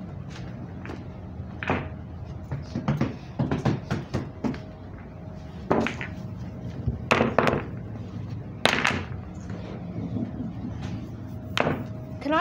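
A handful of scattered thumps and knocks, a few seconds apart, over a faint steady hum.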